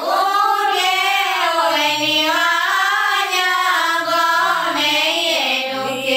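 A girl singing solo, her melody winding up and down in ornamented turns and held notes.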